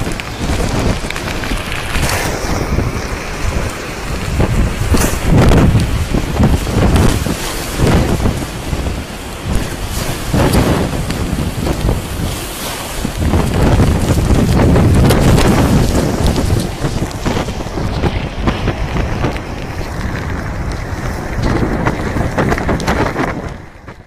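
Strong gusting wind blasting the phone's microphone, over storm waves surging and breaking across a concrete breakwall that the sea has risen above. The sound fades out just before the end.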